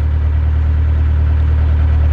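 Narrowboat's engine running steadily while the boat is under way, a deep, even hum.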